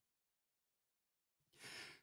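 Near silence, then a male narrator's short, soft in-breath near the end, just before he resumes reading.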